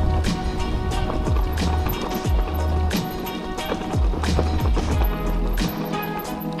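Background music with a deep bass and a drum beat.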